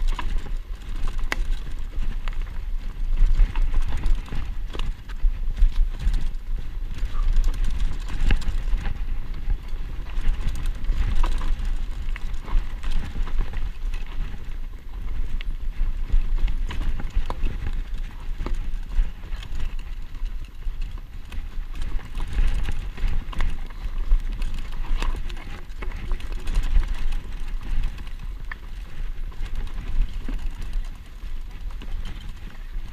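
Mountain bike rattling and clattering over a rocky singletrack descent, with many quick knocks over a steady low wind rumble on the microphone.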